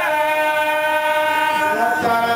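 A chanting voice holding one long, steady note for most of two seconds, then moving on into the next phrase near the end.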